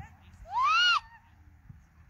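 A single loud, high-pitched whoop from a voice, about half a second long, that rises and then falls in pitch.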